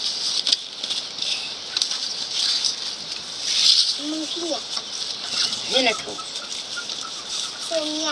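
Dry maize husks rustling and crackling as the cobs are husked by hand, with a few short sounds from a child's voice.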